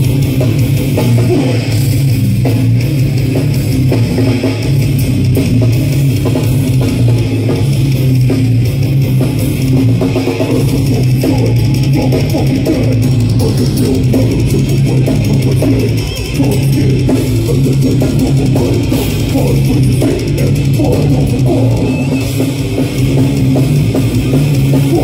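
Death metal band playing live at full volume, with heavy distorted guitars and a pounding drum kit, heard from within the crowd.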